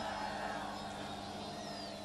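Steady low hum and hiss of a public-address system with no clear event in it.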